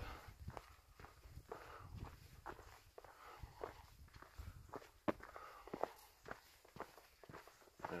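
Footsteps of a hiker walking on a dirt forest trail, faint, about two steps a second.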